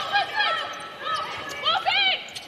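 Basketball shoes squeaking on a hardwood court, with a cluster of sharp squeaks near the end, and a basketball bouncing.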